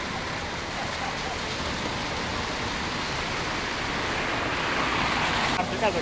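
Steady rushing noise of a car driving along water-covered streets, tyres running through standing water. It swells about four and a half seconds in and drops off suddenly shortly before the end.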